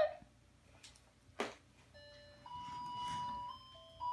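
A single sharp click about a third of the way in, then a baby walker's electronic toy tray plays a simple tinny tune of held beeping notes that step from pitch to pitch.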